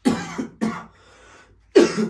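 A man coughing several times in quick, harsh bursts, the loudest cough near the end.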